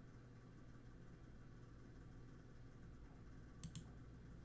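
Near silence with a faint steady room hum, broken a little before the end by two quick computer-mouse clicks in a row.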